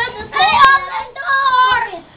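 A young child yelling in a high, sing-song voice, in several loud, drawn-out calls. A single sharp click sounds about two-thirds of a second in.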